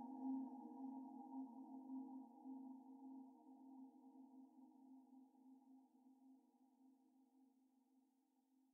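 Ambient music: a held low drone chord fading slowly away to near silence.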